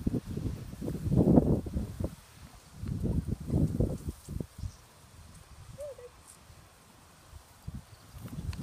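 Footsteps and rustling through grass close to the microphone, loudest in the first four seconds, with one brief faint squeak about six seconds in.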